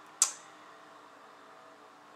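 Quiet room tone with one short, hissy mouth sound from a man, such as a sharp breath or a sibilant, about a fifth of a second in.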